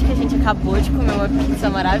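Women talking close to the microphone, over a steady low hum and rumble.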